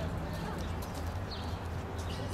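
Footsteps of two people walking on stone paving, faint and irregular, over a low steady outdoor city hum, with a few faint high chirps.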